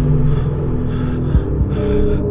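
A frightened man gasping and panting, short breaths several times a second, over a steady low drone. A deep thud lands at the start and again about a second and a half later.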